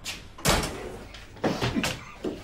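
A building's entrance door slamming shut about half a second in, with two more sharp knocks or clatters near the end.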